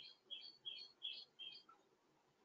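A small bird chirping faintly, five quick high chirps about a third of a second apart.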